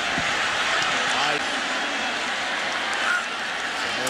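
Stadium crowd noise: a steady din of many voices during a play.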